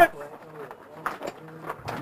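Faint, scattered voices of several players talking in the background, with a few light knocks about a second in and near the end.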